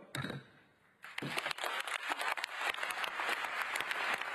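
Delegates in a large conference hall breaking into applause about a second in, a dense, steady clapping that carries on to the end, in reaction to the adoption of the agreement.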